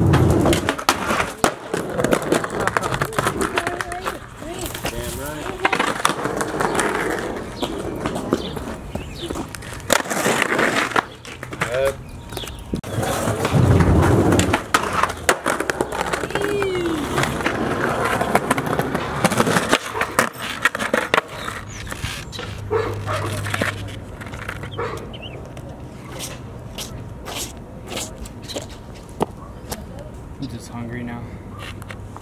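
Skateboard wheels rolling on concrete, with the clack of the board hitting and landing over several attempts. The loudest impacts come right at the start and at about ten and fourteen seconds in.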